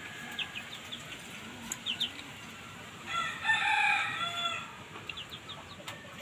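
A rooster crows once, about three seconds in, a call lasting about a second and a half. Short high chirps come and go around it.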